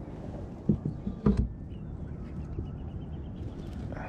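Two short knocks and a splash as a netted bass thrashes and the rubber-mesh landing net is brought aboard a plastic kayak, followed by faint light clicking as the fish is handled.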